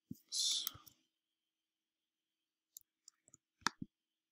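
Computer mouse clicks: a single click at the start, then a quick run of several clicks near the end. About half a second in there is a short breathy hiss.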